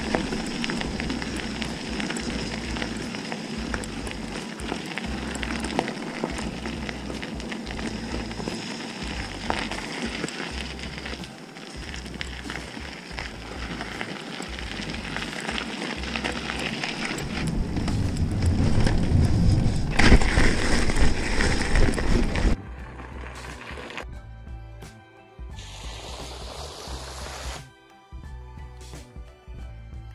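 Background music over mountain-bike riding noise, heard from a camera on the bike: a crackly rush of knobby tyres rolling on a gravel path. The riding noise builds to its loudest a little before it cuts off suddenly about 22 seconds in, leaving mostly the music.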